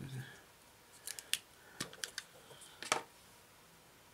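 About six light, sharp clicks of a small plastic paint pot being handled and opened, quick and irregular.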